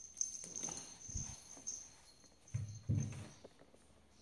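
Two cats play-fighting on a tiled floor: paws scrabbling and bodies bumping and thudding, in two bouts, about a second in and again around three seconds.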